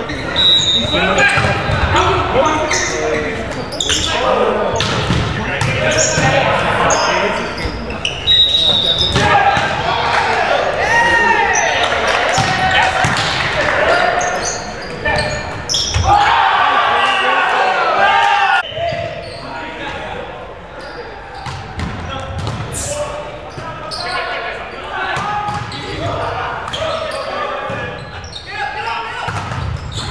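Indoor volleyball play: the ball being struck by hands and hitting the hardwood floor in repeated sharp smacks, with players shouting to each other, all echoing in a large gym hall.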